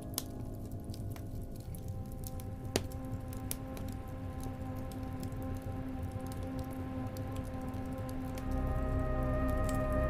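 Slow ambient music of long held tones over the crackling and popping of a log fire, with one louder pop about three seconds in. The music swells near the end.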